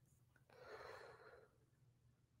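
A man's single soft breath, lasting under a second, about half a second in; otherwise near silence.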